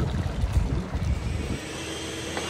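Wind buffeting the microphone outdoors, an unsteady low rumble that eases about one and a half seconds in.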